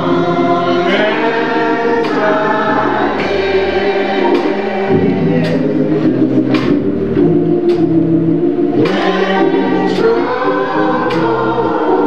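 Gospel music: a group of voices singing over low bass notes, with a sharp beat about once a second.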